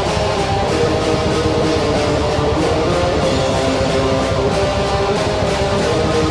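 Melodic death metal recording: distorted electric guitars carry a held melody over bass and a dense, busy rhythm section, loud and steady throughout.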